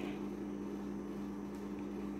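Household refrigerator running with a steady, loud hum.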